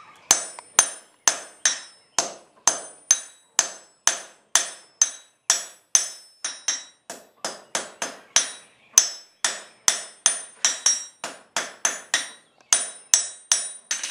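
Blacksmith's hand hammer striking hot iron on an anvil in a steady rhythm, about three blows a second, each with a bright metallic ring.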